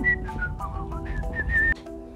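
A woman whistling a few short, high notes while she works, over background music that drops away near the end.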